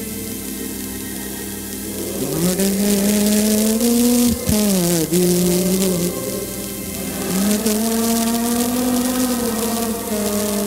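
Slow church music: a melody of long held notes, sliding up into each one, over steady sustained chords.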